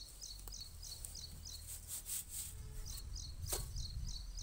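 Farmyard manure poured from a metal pan into a planting pit and worked by hand, soft rustling and sliding of soil, with a sharper scrape near the end. An insect chirps steadily throughout in a quick even rhythm of about three chirps a second.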